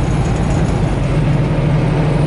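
Semi-truck's diesel engine running steadily at highway cruising speed, heard inside the cab as a constant low drone mixed with road noise.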